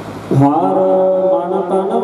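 A man's voice starts a long held chanted note through the microphone about a third of a second in, a Sikh devotional chant. Before it there is a steady hiss.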